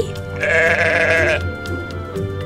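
A sheep bleats once, a wavering bleat about a second long, over soft background music.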